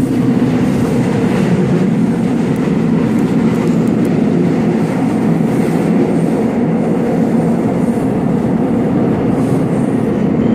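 Subway train running, heard from inside the passenger car: a steady rumble of the wheels on the rails, with a faint clickety-clack.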